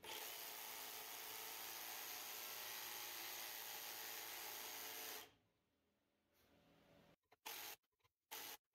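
Jigsaw running and cutting a finger-joint slot into the end of an ash board. It runs steadily for about five seconds, stops suddenly, and then gives one short burst near the end.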